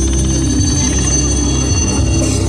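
HAL Cheetah helicopter flying low and close, its rotor beating and its single turboshaft engine whining steadily.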